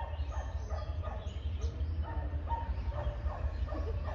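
Scattered short animal calls, with a steady low hum underneath.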